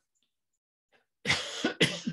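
A person coughing twice in quick succession, starting about a second in, the second cough shorter and sharper.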